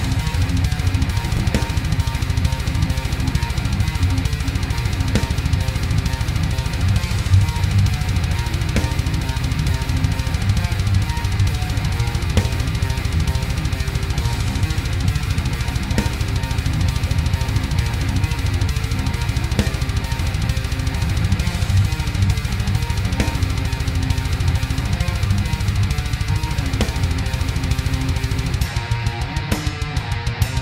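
Heavy metal song played back at its 133 bpm recording tempo: distorted electric guitars, bass and drums with a busy bass drum, kicking in loud right at the start. Near the end the top end drops away and the riff turns choppier.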